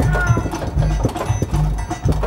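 Music with a steady beat playing from a coin-operated Rent-A-Dog arcade machine, with short clicking sounds and a few held notes near the start.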